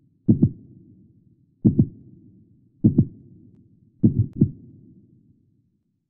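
Heartbeat sound effect: four double thumps, about one every 1.3 seconds, each pair trailed by a low fading rumble; the beats stop about five seconds in.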